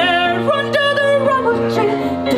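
Music with a voice singing sustained, wavering notes, several note changes within a couple of seconds, over a steady low accompaniment.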